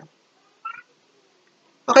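A single short, high-pitched squeak-like sound, faint and about a quarter second long, a little over half a second in.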